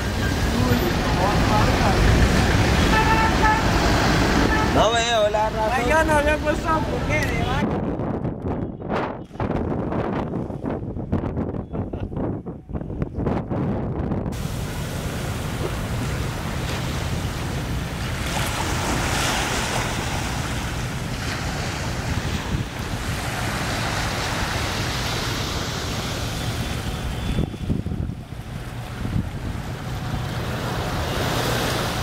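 Street sound for the first seven seconds or so: traffic with people's voices. Then a stretch of low wind rumble on the microphone. From about halfway on, small waves wash steadily onto a sandy beach, with wind.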